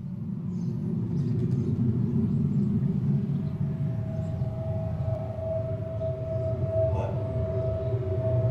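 Beatless intro of an electro track: a low rumbling drone fading in, joined about three seconds in by a steady higher sustained tone.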